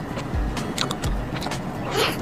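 Close-miked chewing of a soft, creamy chocolate crepe roll: small wet mouth clicks and smacks over soft low thuds that repeat about every half second.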